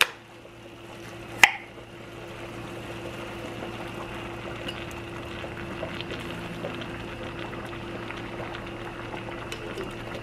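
Jarred Alfredo sauce pouring from its jar into a hot enamelled cast-iron pot of mushrooms, with a steady bubbling hiss from the pot as the sauce goes in. A single sharp knock comes about a second and a half in.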